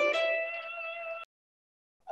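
Electric guitar played fingerstyle with the rest-stroke technique: a quick phrase ends on a single held note that rings and fades. The sound then stops dead a little over a second in, leaving silence.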